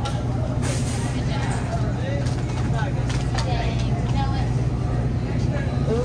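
Steady low hum of supermarket glass-door freezer cases running, with faint voices mixed in.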